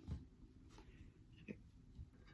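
Near silence: room tone, with two faint small ticks, one just after the start and one about a second and a half in.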